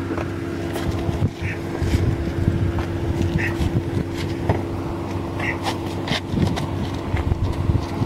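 Scattered knocks, bumps and rustling as a limp person is slid and pushed across a car's back seat, over a steady low hum.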